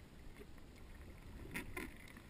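Muffled underwater rumble of water against a GoPro's waterproof housing as the freediver pulls along the rope, with two short knocks near the end.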